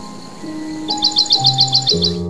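Sad, relaxing solo piano music with sustained notes. About halfway through, a bird's quick chirping trill of about nine rapid chirps joins it.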